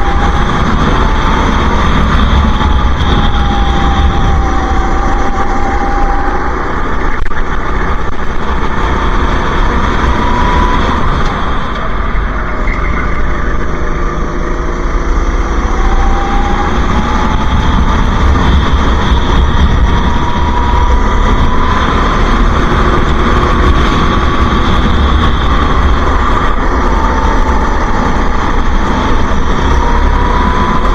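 Racing kart engine heard from onboard under racing load. Its revs climb along the straights and drop into the corners, with a longer dip near the middle, over a heavy low rumble.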